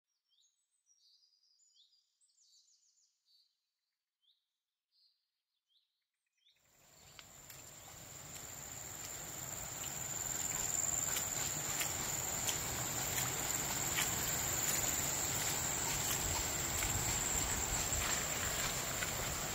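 A few short, high bird chirps with gaps between them, then tropical forest ambience fading in: a steady high-pitched insect drone over a wide rushing background, with scattered faint clicks.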